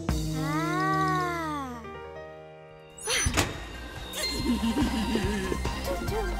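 Cartoon soundtrack: a pitch glide that rises and falls over the first two seconds and fades, a sharp thump about three seconds in, then bouncy music.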